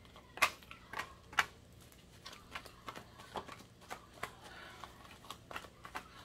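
A deck of tarot cards shuffled by hand: soft, irregular card clicks and slides, with a few sharper snaps in the first second and a half.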